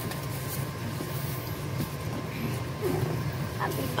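Steady low background hum with faint room noise.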